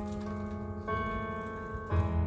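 Electric keyboard playing sustained chords as the song's accompaniment, a new chord struck about a second in and another near the end.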